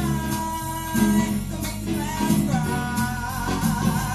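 A children's song with guitar accompaniment and singing, playing at a steady level.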